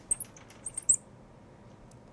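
Marker squeaking on the glass of a lightboard as words are written: a run of short, high chirps that stops about a second in.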